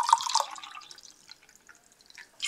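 Green tea poured from a large can into a glass mug, the stream splashing loudest in the first half second and dying away over about a second and a half as the pour eases off.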